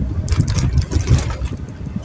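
Low, uneven rumble of a car's engine and tyres heard from inside the cabin while driving.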